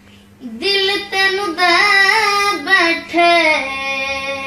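A boy singing solo in a high voice, holding long notes that bend and waver in pitch. He starts a new phrase about half a second in, after a short pause for breath.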